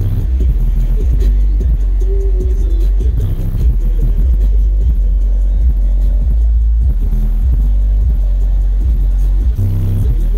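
Bass-heavy music played loud through a car audio system of twelve Sundown Audio NSv4 12-inch subwoofers on SALT amplifiers. Deep bass dominates.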